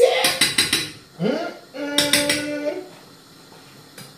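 A metal utensil clinking against a pan several times in quick succession in the first second, and again about two seconds in, with a man's short laugh and a held, hummed 'mm' as he tastes the food.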